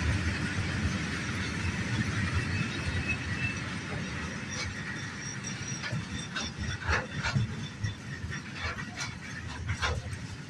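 Freight train's open wagons rolling past: a steady low rumble with a thin, high wheel squeal in the first half, then from about halfway a run of sharp clanks and knocks from the wheels and couplings.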